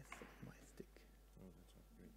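Faint, low murmured speech with some whispering, with a couple of faint clicks about one and a half seconds in.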